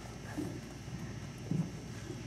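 Two dull, hollow knocks about a second apart, the second louder, over a steady low room hum.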